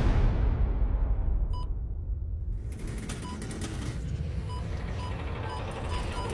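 Film-trailer sound design: a deep boom at the start that fades into a low rumble, with short high ticks that come faster and faster over the second half.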